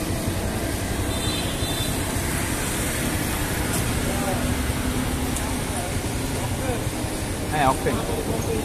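Steady low rumble of engine and road traffic noise, with faint voices in the background and a short voice near the end.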